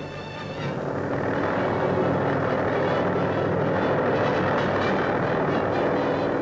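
Helicopter engine and rotor noise on an old newsreel sound track. It swells about a second in and then holds steady.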